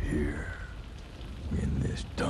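A deep, gravelly male voice speaking quietly and roughly over a steady low rumble.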